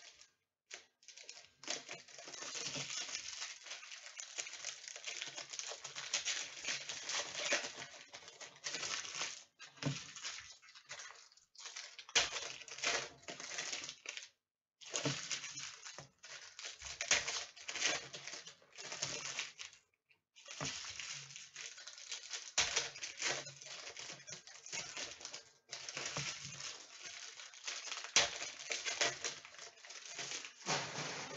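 Foil wrappers of trading card packs crinkling and tearing as they are opened, mixed with the light flicking of the cards being handled. It comes in long stretches broken by several short pauses.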